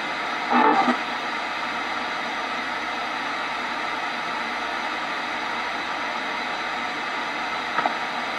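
Spirit box, a radio rapidly sweeping through stations, giving a steady hiss of static, with a brief louder fragment of sound about half a second in.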